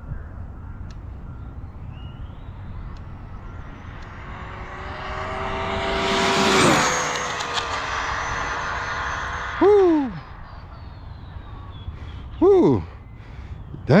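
Arrma Limitless RC speed-run car on 8S power making a full-speed pass of about 122 mph. Its Castle brushless motor whine grows louder and higher as it comes in, drops sharply in pitch as it passes about two-thirds of the way through, then fades down the road. Two short loud calls follow near the end.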